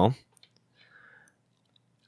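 A few faint, small plastic clicks and a soft rub as the tight-fitting front hair piece is worked off an S.H. Figuarts action figure's head.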